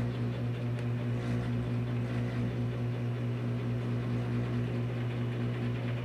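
Steady low-pitched mechanical hum at one unchanging pitch, with no other events.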